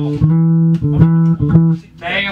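Amplified guitar playing a short run of single plucked low notes, several notes to the second, that stops just before the end.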